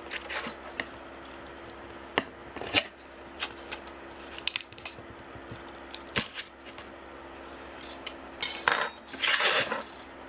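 Metal scraper blade clicking and scraping against a glass print bed as a 3D-printed part held down with glue stick is pried loose, with scattered sharp clicks and a longer scrape near the end.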